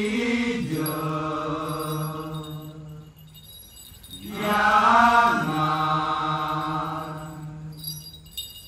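A male voice chanting in Balinese Kecak style: two long held phrases, each sliding down in pitch near its start and then holding one steady note, with a short break between them.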